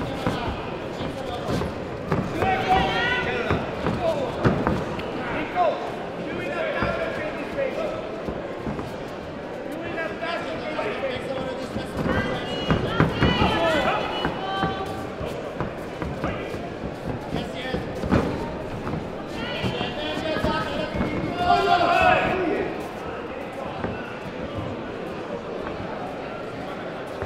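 Shouting from coaches and spectators in a large, echoing sports hall, with repeated sharp thumps and slaps from the kickboxers' footwork on the mat and their gloved strikes. The shouts come in short bursts, loudest around the middle and near the end.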